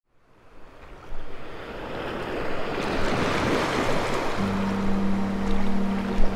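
Small waves breaking and washing ashore, fading in at the start and swelling after a couple of seconds; a steady low hum joins in about four seconds in.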